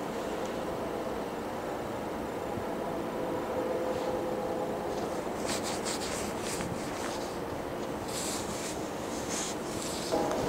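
Low, steady rumble of a distant diesel train approaching, with faint steady tones. From about halfway through, short scratchy rubbing noises come and go over it.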